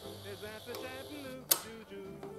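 Grundig TK149 valve reel-to-reel tape recorder running with a low, steady motor hum during a function test of its new drive belts, and one sharp click of its control lever about one and a half seconds in.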